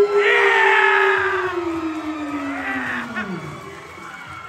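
A man's voice stretching out a long shouted call of the champion's name, announcer-style, its pitch slowly falling over about three seconds before it trails off, with a crowd cheering and screaming under it.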